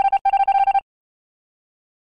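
Electronic game-over sound effect for a lost round: a rapid run of beeps on one steady pitch, like a phone ringing, stopping under a second in.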